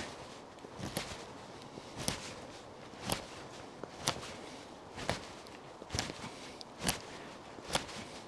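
Solognac Sika 100 stainless knife shaving green maple in cross-chest lever cuts, each stroke a short, sharp cut into the wood, about one a second.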